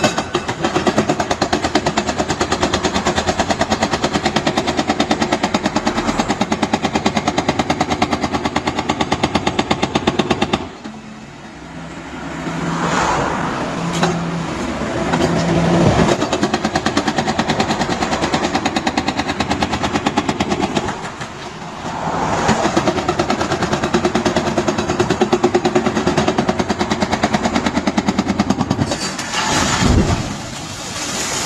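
Hydraulic breaker hammer on an excavator pounding the stone of an arch bridge: a long run of fast, machine-like blows, broken by two short pauses.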